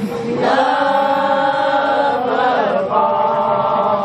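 A crowd singing together without accompaniment, holding one long note and then, about three seconds in, another.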